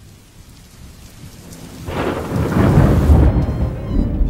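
Thunderstorm sound effect: a rain hiss fades in, then loud, deep thunder rumbles from about two seconds in.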